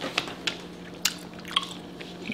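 Wet mouth sounds of someone chewing octopus: about four short, sharp smacks and squelches.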